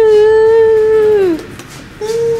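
A person's voice holding one long, loud high note, which slides down in pitch and stops about one and a half seconds in.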